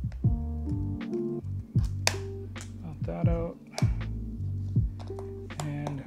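Background music with a beat and a deep bass line.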